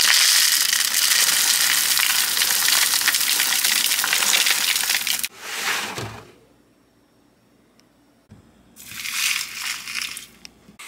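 Granola clusters poured from a box into a paper bowl: a steady rush of falling pieces for about five seconds, then a short second pour. After a pause, milk pours onto the granola near the end.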